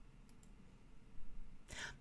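A quiet pause between phrases of a woman's speech into a close headset microphone: a couple of faint mouth clicks, then a short breath in near the end.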